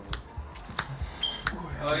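Sleeved trading cards being handled over a play mat: several light clicks and taps as a deck is worked through by hand, with a short 'oh' near the end.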